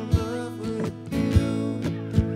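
Gibson Southern Jumbo acoustic guitar strummed live, with a steady stroke about every half second over chords that ring on underneath.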